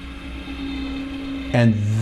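Electric preload adjuster on the 2023 Ducati Multistrada V4 Pikes Peak's Öhlins rear shock, humming steadily with a constant tone as it changes the rear spring preload.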